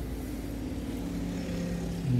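Red double-decker bus driving past close by, its engine humming steadily; the pitch drops about halfway through.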